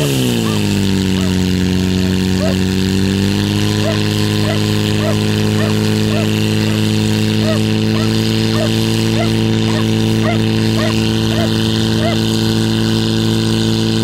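Portable fire pump's engine running at high revs, drawing water from the tank and driving it through the hoses. It is a steady drone that settles just after the start and steps slightly higher about three and a half seconds in, with a shout near the end.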